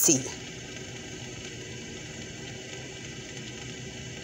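Steady low background hiss of room tone, with no distinct event.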